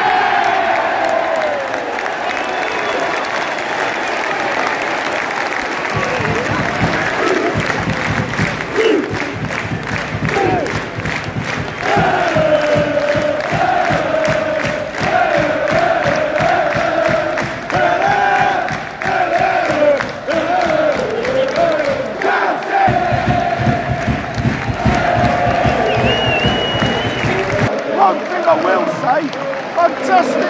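Football crowd cheering a goal, then many voices singing a chant together over a steady, evenly repeated beat.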